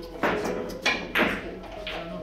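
Four sharp clacks of heavy billiard balls knocking together and against the table, the loudest pair about a second in.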